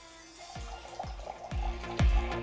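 Liquid poured from a small glass bottle into a glass, a wavering trickling sound, over background music with a steady beat that grows louder near the end.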